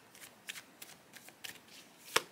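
A deck of picture cards being shuffled by hand: a run of faint, quick card clicks and slaps.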